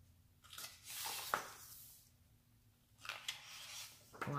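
Pages of a large art book being turned by hand: a paper swish about a second in that ends in a crisp snap, then a second, fainter rustle of paper near the end.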